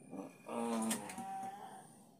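A short animal call with a clear pitch about half a second in, lasting around half a second, followed by a fainter, higher steady note.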